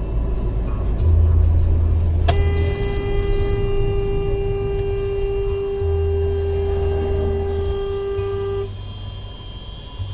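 A vehicle horn held in one long, steady blast of about six seconds, starting a couple of seconds in, over the low rumble of a car driving on the road.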